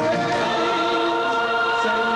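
Portuguese-language gospel song: a male lead singer holds notes over instrumental accompaniment, with choir-like backing voices.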